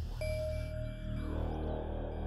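Background score: a low sustained drone with a single bell-like note that rings out just after the start and fades within about a second.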